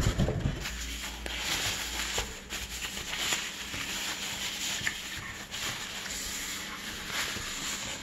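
Packing wrap rustling and crinkling as a hand pulls it back from a guitar body in a cardboard box, with small clicks of handling throughout. A knock right at the start as the box lid is lifted.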